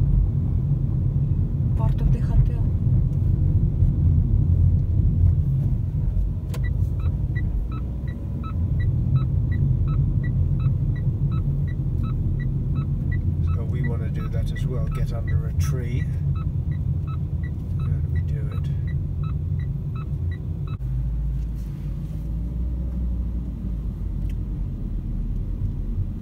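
Road and engine rumble inside a moving car's cabin, with the turn signal ticking about twice a second from about six seconds in until about twenty seconds in.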